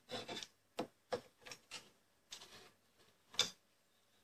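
A hand file rasping on the oak fingers of a dovetail jig comb, shaping them to fit: about seven short, irregular strokes, the loudest one near the end.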